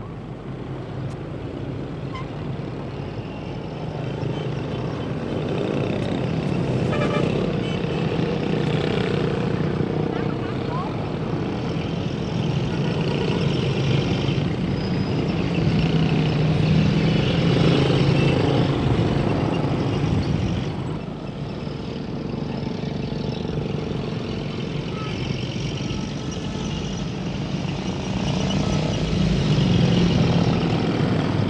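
Street traffic: small motorbike engines running as bikes pass by, growing louder over the first several seconds, with a brief dip about two-thirds of the way through. Indistinct voices are mixed in.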